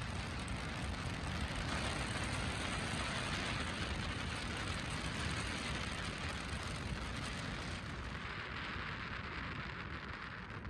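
Steady road noise of a car in motion: tyres on asphalt and wind, a low rumble under an even hiss.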